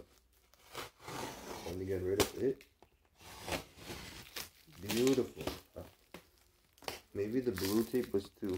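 Plastic wrapping being pulled and torn off by hand, crinkling irregularly, with short vocal sounds in between.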